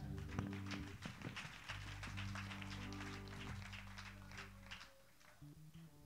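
A church band playing softly: a held low keyboard chord with light, scattered taps over it, dropping away about five seconds in.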